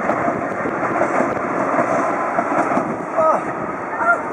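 Light rail train running past on the tracks below, a steady noise of wheels and motors.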